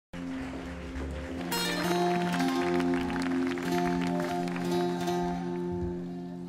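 Instrumental music of held, slowly changing notes over a steady low note, growing fuller about a second and a half in.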